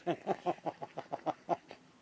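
An elderly man laughing: a quick run of about nine short voiced "ha" pulses, roughly five a second, that stops near the end.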